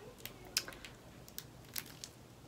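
Faint handling of a paper list pad: a few light crinkles and ticks, spaced irregularly, as its pages are moved.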